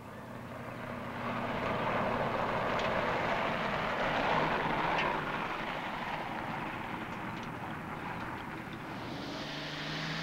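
Car engine and driving noise on an old film soundtrack. It swells over the first couple of seconds, then runs steadily.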